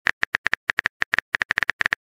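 Rapid phone-keyboard typing clicks from a texting app, about a dozen short taps a second, unevenly spaced, as a message is typed out.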